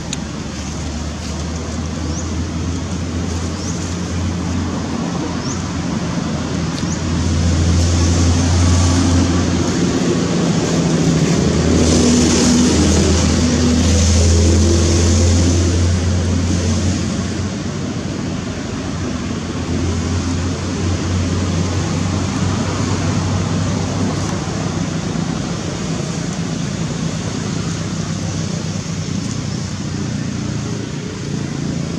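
Steady low outdoor rumble with a hiss over it. It grows louder through the middle and eases off again.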